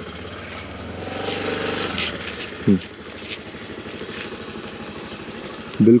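Scooter engine running as the rider accelerates past and pulls away, growing louder and rising a little about a second in, then settling quieter and steady.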